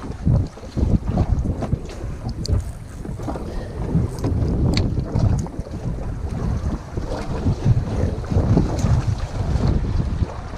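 Wind gusting over an action camera's microphone on an open boat, a low, uneven buffeting rumble that rises and falls every second or so, with a few faint high ticks.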